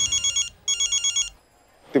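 Mobile phone ringing with a high, rapidly trilling electronic ring, in two bursts of about half a second each with a short gap between them.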